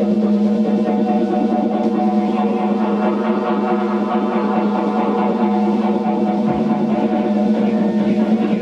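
Live band music played on keyboards and synthesizers: dense sustained chords over a strong, steady low note, with a drum beat under them.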